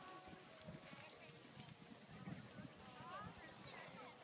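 Faint, distant hoofbeats of a horse moving over a sand arena, soft irregular thuds, with faint voices in the background.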